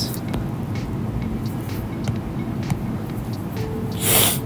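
Steady low background rumble, with a few faint light taps of a stylus on a tablet screen while a box is drawn.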